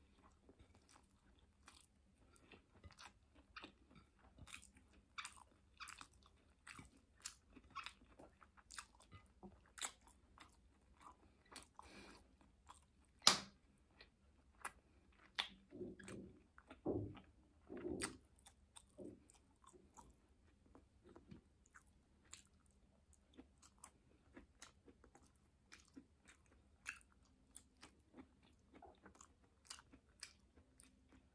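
Close-up chewing and mouth sounds of a person eating rice and sautéed vegetables: faint, irregular wet clicks and smacks. There is one sharper click about 13 seconds in and a few heavier low smacks around 16 to 18 seconds.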